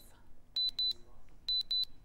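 Auction countdown clock beeping as it runs out to zero: two pairs of short, high-pitched beeps about a second apart.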